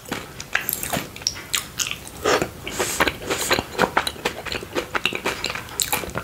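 Close-miked biting and chewing of a mochi ice cream ball with a cookie dough and chocolate filling, heard as a string of short, sharp mouth clicks and smacks with a few louder bites.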